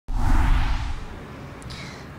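Whoosh sound effect with a deep bass hit for an animated TV news logo intro. It starts suddenly and is loud for about a second, then fades into a quieter tail.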